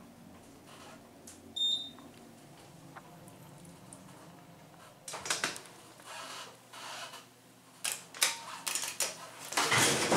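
Hydraulic elevator car: a low hum fades out over the first few seconds, and a short high beep sounds about one and a half seconds in. Scattered clicks and knocks follow in the second half.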